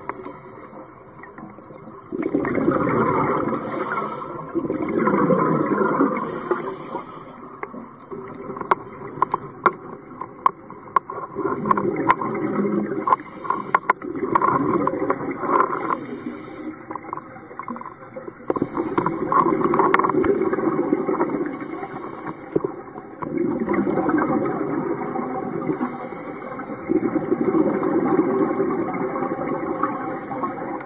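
Scuba diver breathing through a regulator underwater. Each inhale is a short hiss and each exhale a longer bubbling rumble, the cycle repeating every few seconds. Scattered sharp clicks fall between breaths in the middle.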